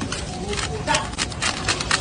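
A knife tapping and scraping the crisp, crackling skin of a whole spit-roasted wild boar, giving a few short crunchy clicks, with a faint voice in the background near the middle.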